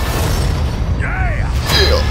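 Movie trailer sound effects: a deep rumble throughout, a short curved cry-like tone about a second in, and a sharp falling sweep near the end.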